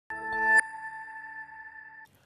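News programme logo sting: a chord of steady tones that swells for about half a second and ends on a bright hit, after which a single high ringing tone lingers and slowly fades.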